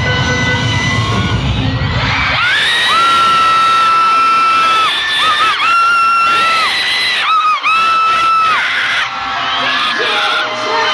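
Arena concert crowd screaming and cheering, with loud bass-heavy sound that drops out after about two seconds. Then a shrill, high scream is held in long stretches of a second or two, with brief breaks between them.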